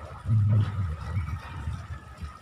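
Wind buffeting an outdoor phone microphone in uneven low gusts, strongest about half a second in, over a faint steady high tone.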